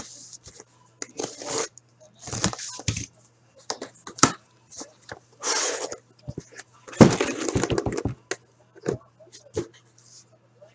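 Taped cardboard case being torn open, with tape and cardboard ripping in several short noisy bursts. About seven seconds in comes a loud knock, then a quick run of knocks and taps as the boxed card packs are lifted out and stacked.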